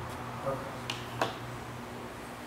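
Two short, sharp clicks near the middle, about a third of a second apart, over a low steady room hum.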